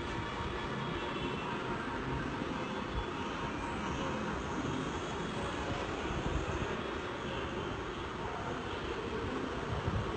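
Steady background noise with a faint constant hum and no distinct events.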